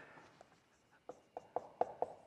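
Marker writing on a whiteboard: quiet at first, then a quick series of short strokes in the second half as letters are written.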